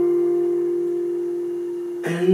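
Acoustic guitar: a single plucked note left ringing and slowly fading.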